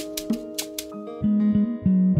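Afrobeat x dancehall instrumental beat: a plucked guitar melody over light ticking percussion, with a loud bass line coming in about a second in.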